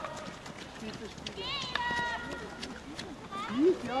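Field hockey play on artificial turf: distant players' shouts, twice, with a few faint clicks of sticks on the ball.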